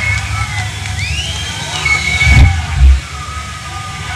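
Live black metal band playing: distorted electric guitar over fast drumming, in a rough, saturated recording, with a couple of heavy low hits shortly before the three-second mark.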